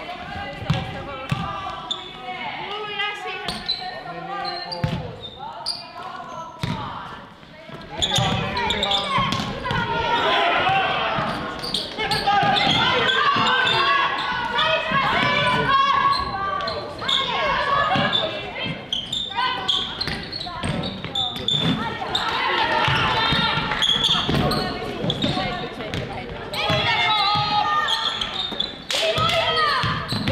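Basketball game sounds in a gymnasium: a ball bouncing repeatedly on the wooden court, with voices calling out through most of it, echoing in the large hall.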